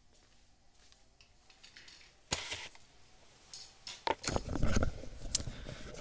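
Near silence, then from a little over two seconds in a run of clattering clicks, knocks and low rubbing handling noise. This is a headset microphone being put back on while a tub of markers is set down on the desk.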